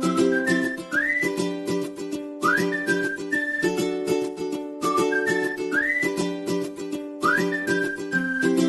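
Background music: a whistled melody gliding between notes over a steady beat, the same short phrase coming round every couple of seconds.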